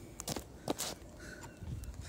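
A few faint footsteps and knocks on stone paving in the first second, then low rumbling handling noise as the camera is picked up.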